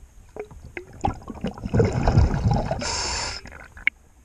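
A scuba diver breathing underwater through a regulator. Exhaled bubbles rumble and gurgle from just under two seconds in, followed by a short hiss of inhalation, with small scattered clicks throughout.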